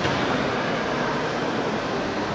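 Steady, even background noise of a large workshop hall, with no distinct event standing out.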